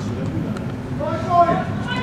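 A high-pitched shouted call from a player or spectator on a football pitch, starting about a second in, over steady low background noise.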